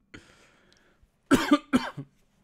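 A man coughing twice, sharply, about a second and a half in, after a short breathy sound.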